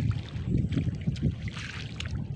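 Wind buffeting the microphone in a low rumble, with a brief wet rustling near the end as a clump of nutgrass is pulled by hand out of waterlogged mud.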